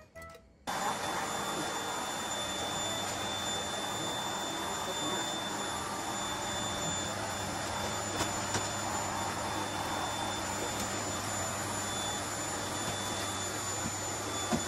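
Vacuum cleaner switched on less than a second in, then running steadily with a high whine while it is used to vacuum the floor.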